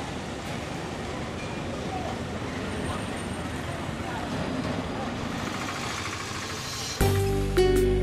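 Steady street traffic noise from a busy town road. About seven seconds in, it cuts abruptly to background music with held tones and chiming strikes.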